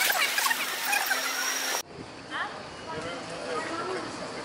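Pool water sloshing and splashing close to the microphone, with voices over it. About two seconds in, the sound cuts off abruptly to a quieter stretch with faint distant voices.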